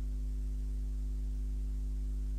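Steady low electrical mains hum with fainter overtones above it, unchanging, on the blank end of a cassette transfer after the music has stopped.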